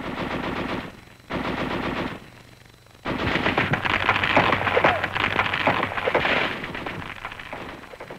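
Water-cooled .30 caliber Browning machine gun firing in bursts: two short bursts of under a second each, then a long burst of about four and a half seconds.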